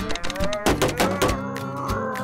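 A cartoon character's long, angry growling cry that rises in pitch and then holds, over background music.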